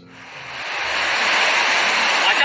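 Loud, steady rushing noise of surf on a beach, swelling up over the first second.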